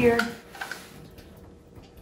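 A few faint clicks and light rustling as a cordless staple gun is picked up off the table and brought to the post; no staple is fired.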